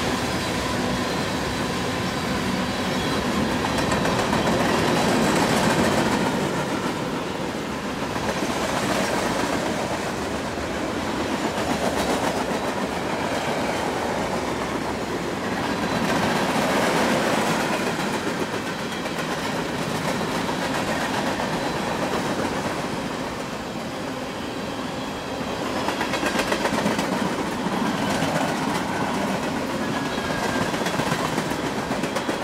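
Freight train cars (tank cars and covered hoppers) rolling past close by: steel wheels running on the rails in a steady rumble that swells and eases every few seconds as the cars go by.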